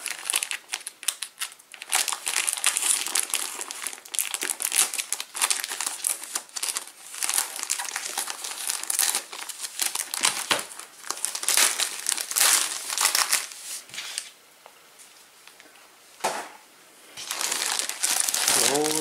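Foil-plastic packaging of a trading-card starter pack crinkling and rustling as it is cut open along the edge with scissors and handled. It goes quiet for about two seconds near the end, then rustles again.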